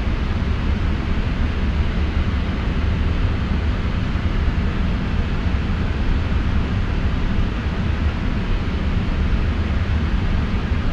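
Steady flight-deck noise of a Boeing 777 freighter on the ground before takeoff: a low rumble under an even hiss of air, with no distinct events.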